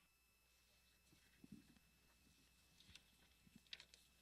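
Near silence: faint room tone with a few soft scattered clicks.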